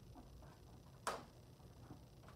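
A single sharp click about a second in, as a small letter tile is set onto a handheld tray; otherwise faint room tone.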